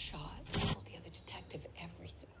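Faint whispering voice, with one short burst of hiss about half a second in.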